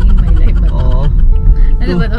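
Steady low road rumble inside a moving car's cabin, with short snatches of a voice about half a second in and again near the end.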